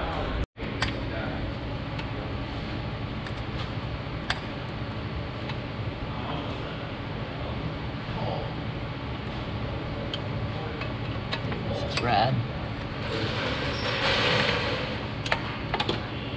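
Light clicks and handling noises from hands fitting the intake pipe's coupler and clamp onto a throttle body, over a steady shop hum.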